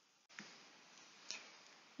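Near silence, broken by two faint short ticks about a second apart.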